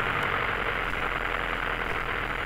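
Single-engine light aircraft's piston engine at idle during the landing roll, heard as a steady low drone of cabin noise.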